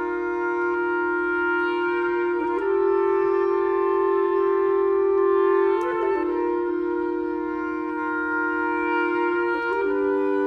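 A reed quintet (oboe, clarinet, saxophone, bass clarinet and bassoon) playing long held chords in close harmony, moving to a new chord about two and a half seconds in, again about six seconds in, and once more just before the end.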